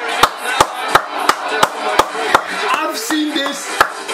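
Sharp hand claps in a steady run of about three a second, over a bed of voices.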